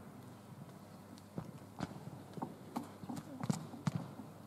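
Scattered, irregular light knocks and taps from a group of people moving through an arm-swinging warm-up on a sports hall floor, with faint voices in between.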